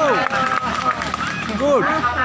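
People's voices talking and calling out over a steady outdoor background, with a louder rising-and-falling call near the end.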